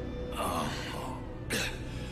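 An animated character's voice coughing twice in pain, the first cough longer, the second short, over a low steady music score.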